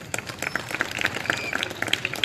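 Light applause from a small audience: many irregular, overlapping claps.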